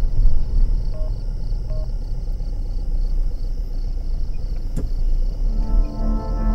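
Low rumble of a car heard from inside the cabin while driving, with two short faint beeps a little after the start. Film music with sustained tones comes in near the end.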